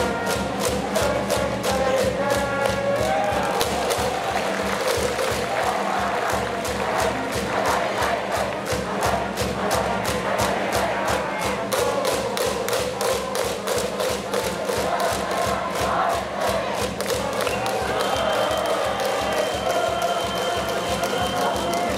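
Organised cheering from the stands of a Japanese high-school baseball game: a drum beaten steadily about four times a second under a crowd chanting with band music.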